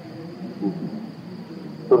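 A pause in a man's speech: a faint low voice murmurs briefly about half a second in, over a steady high-pitched whine, and the speaking voice resumes at the very end.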